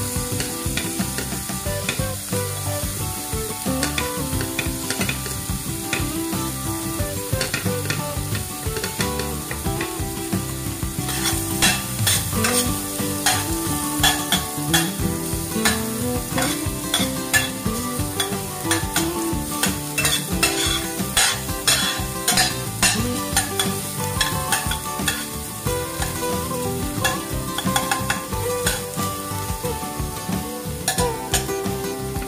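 Diced carrots and garlic sizzling in hot oil in a stainless-steel frying pan, with a spatula stirring and scraping against the pan. The sharp scraping clicks come thicker from about eleven seconds in.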